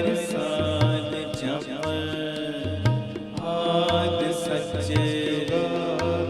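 Shabad kirtan played on harmonium and tabla, with a sung devotional melody. The harmonium holds steady chords, the tabla keeps a regular rhythm of low bass strokes and sharp strikes, and the voice glides over them.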